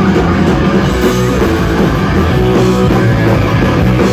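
A punk rock band playing live and loud, with distorted electric guitar and drum kit driving on without a break.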